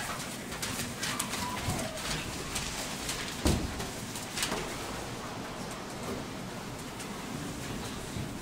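Stage props being moved by hand during a scene change: shuffling, scuffs, knocks and footsteps, with a loud thump about three and a half seconds in and a smaller one just after.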